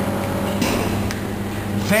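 A steady low hum, with a voice starting to sing right at the end.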